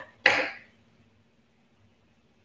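A woman clearing her throat once, briefly, about a quarter of a second in.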